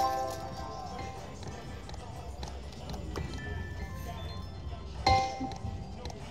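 Aristocrat video slot machine playing its electronic chimes: a short win tune fades out in the first second, then comes a sudden burst of tones about five seconds in as the next spin starts. A steady low hum runs underneath.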